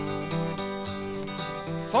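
Acoustic guitar strummed in a country-folk style, an instrumental gap between sung lines. The singing comes back right at the end.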